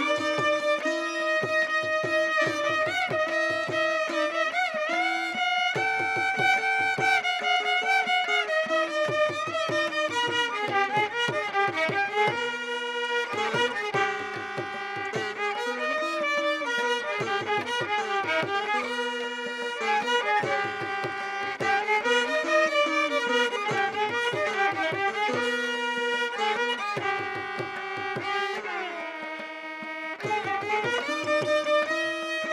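Violin and veena playing a Carnatic melody together, the line sliding between notes.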